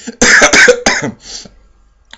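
A man coughing: a short, loud fit of a few quick coughs in the first second, then a faint trailing cough.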